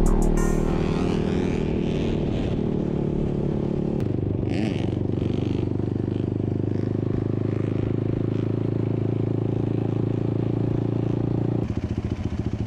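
A sport quad's engine running at a steady, even speed as a low drone. A short scraping hiss comes about four and a half seconds in.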